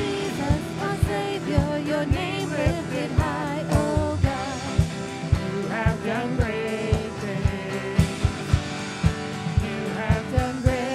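A man singing a worship song to his own acoustic guitar, backed by a steady low beat about twice a second.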